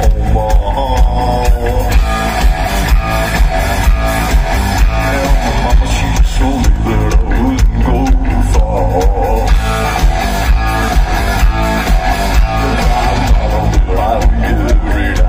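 Rock band playing live through a large outdoor PA: electric guitars, bass and drums with a steady beat, loud and continuous.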